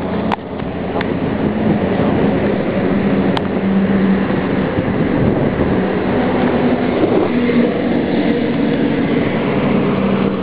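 Steady highway traffic noise, with the low engine drone of heavy vehicles going by. A few sharp clicks come in the first few seconds.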